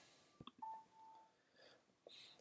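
A faint mouse click, then a short, steady electronic beep lasting about two-thirds of a second from the online note-naming quiz, sounding as the answer is accepted as correct.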